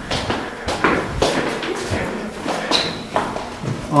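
Footsteps on a concrete floor, about two steps a second, with a brief high squeak about two-thirds of the way through.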